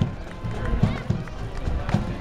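A platoon of Navy sailors marching in step, their shoes striking the pavement together roughly every half second. Music and crowd voices continue underneath.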